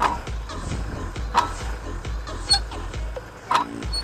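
Tractor diesel engine running steadily under load while pulling a plough through the soil, with a few sharp knocks, about one and a half, two and a half and three and a half seconds in.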